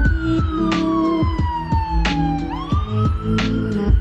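Emergency vehicle siren wailing, its pitch falling slowly, then sweeping quickly back up near the end, over background music with a steady beat.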